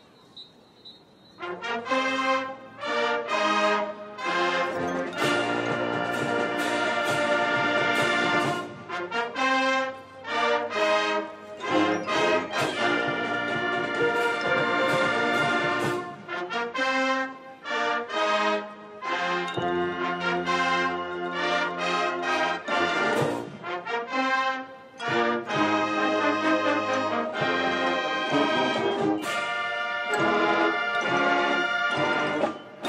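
Full marching band playing, led by brass, entering together about a second and a half in after a near-silent start, with several short breaks between phrases.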